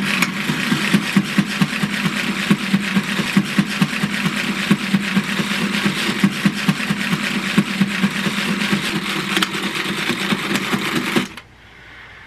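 Small handheld electric saw running and cutting into a pumpkin, a steady buzzing motor with a rapid rattling rhythm that cuts off suddenly near the end.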